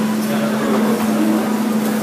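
Steady electric hum with an even hiss from a running wall-mounted fan, holding one unchanging low note.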